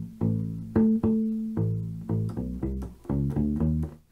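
Kala Journeyman U-Bass (bass ukulele) playing a syncopated funk bass line: two low plucked notes, then two ringing seventh-fret harmonics on the D string about a second in, then a quicker run of plucked notes with a short pause before three rising notes near the end.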